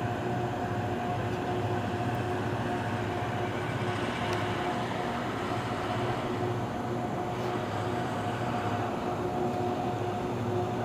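Harsco rail grinder train working along the track: a steady mechanical drone with a constant whine running over it.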